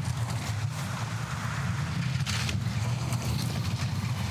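Two-man bobsleigh running down the ice track at about 100 km/h: the steady low rumble of its steel runners on the ice, with a brief rattle a little past halfway.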